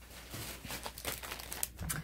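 Clear plastic zip-top bag crinkling as it is picked up and handled: a continuous run of small irregular crackles.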